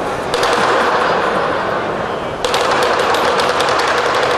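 Lion dance percussion ensemble of drum, cymbals and gong playing a fast, loud, dense roll of rapid strikes, with a steady metallic ring under it.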